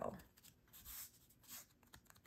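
Faint rustling of a paper tag backed with glued-on cheesecloth as it is handled in the hands. There are two soft brushing scuffs, one about a second in and one a moment later.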